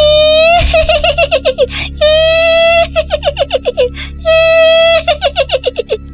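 A woman's shrill, high-pitched laugh, the 'mengilai' of a langsuir ghost, sounding three times: each time a long held high note breaks into a quick cackle. A low music drone runs underneath.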